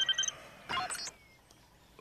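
Electronic ringing tone of a handheld communicator, a steady high pulsing ring that stops just after the start. A short electronic blip with a falling pitch follows under a second in.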